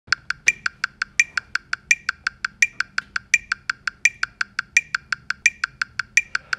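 Metronome clicking steadily, about five to six clicks a second, with every fourth click accented and sounding slightly different, keeping tempo for horn practice.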